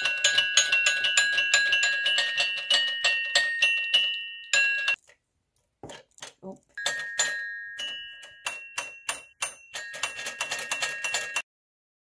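Restored 1940s metal toy piano being played: quick, repeated, ringing chime-like notes, often two at a time, at several strikes a second. The playing breaks off about five seconds in, resumes about two seconds later, and stops abruptly near the end.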